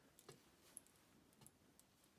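Near silence: room tone with a few faint, light ticks.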